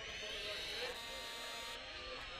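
A crowd of many voices calling out together: high drawn-out cries over a mass of lower voices, swelling in just before and holding steady.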